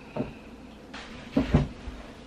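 A light knock, then a heavier double thump about a second and a half in.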